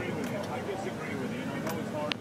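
A truck driving off-road over desert sand, heard from inside the cab: the engine running, with a few knocks from the body, under indistinct talking.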